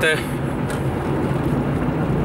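Steady engine hum and road noise inside a moving car's cabin.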